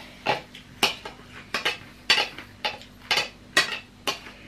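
A utensil clinking and scraping against glass bowls, about seven short knocks spaced roughly half a second apart, as ground sambal is worked out of a glass bowl.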